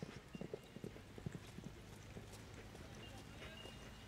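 Faint hoofbeats of a horse cantering on a soft dirt arena: a quick, irregular run of dull thuds in the first two seconds that grows weaker as the horse slows.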